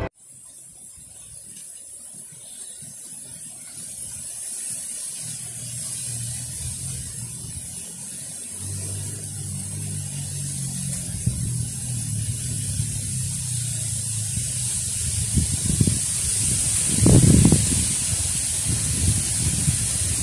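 Outdoor ambience by a ditch: a steady high-pitched hiss under a low rumble of wind on the microphone that grows louder, with a few stronger gusts near the end.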